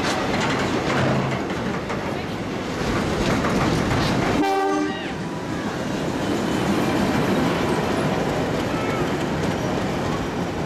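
A heritage train's carriages and wagons rolling past on the track, giving a steady wheel and running-gear noise. A brief horn-like tone sounds about halfway through.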